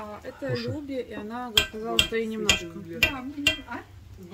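A slotted metal skimmer spoon clinking against the pot and plate about five times as rice is dished out, under background talk.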